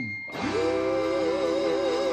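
Live blues-rock band music: a falling sung phrase ends right at the start, and about a third of a second in a long held note with a steady vibrato begins and carries on.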